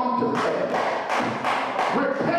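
Rhythmic percussive strikes, sharp and evenly spaced at about three a second.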